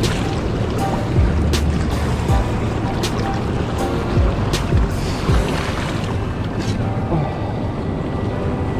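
Fast-flowing river water rushing, with wind buffeting the microphone and a few sharp knocks. Background music plays faintly underneath.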